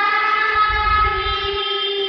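A long, steady horn-like tone held at one pitch, loud and unbroken.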